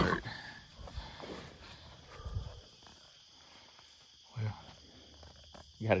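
A wild boar hog in a trap giving a few short, low grunts as it goes down, dying after being shot with a .22 Magnum.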